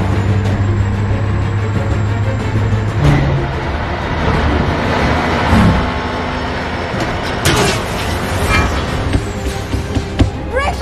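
Action-film sound mix: a music score over a school bus's engine running hard among passing traffic, with a sharp hit about seven and a half seconds in.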